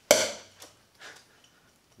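One sharp knock of a 4A offstring yo-yo during play, ringing out briefly, followed by a few faint ticks.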